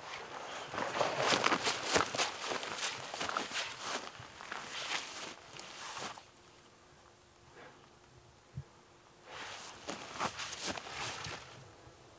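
Footsteps crunching through brush and forest undergrowth in two stretches, with a pause and a single knock between them.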